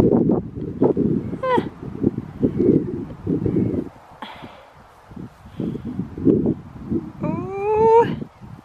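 A woman's voice gives a short wordless vocal sound about a second and a half in. Near the end comes a long strained cry that rises steadily in pitch as she kicks up into a headstand. Uneven low rumbling, likely wind on the microphone, runs underneath.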